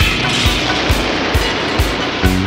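Instrumental rock music: a dense, full wash of band sound over a steady low drum beat of about two strokes a second.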